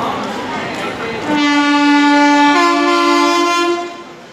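Train horn sounding for about two and a half seconds, starting a little over a second in; partway through, its note steps up as a second, higher tone takes over. Platform chatter and train noise come before it.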